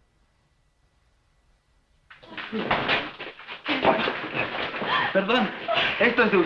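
Near silence for about two seconds, then several excited voices exclaiming at once, overlapping without a break.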